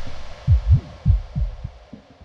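Breakdown in a hardcore electronic track: the fading tail of a noise wash gives way to sparse, deep drum-machine kicks, about five in two seconds, each dropping in pitch.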